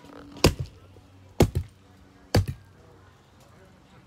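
Three sharp thumps about a second apart, the second followed closely by a lighter one.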